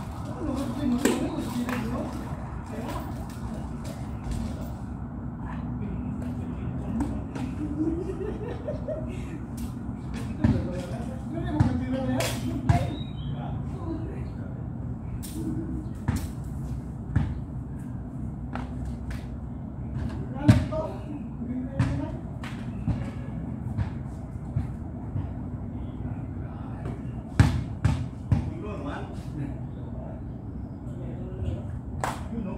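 Men's voices chattering, with scattered sharp clicks and knocks throughout and the loudest ones at about 20 and 27 seconds in.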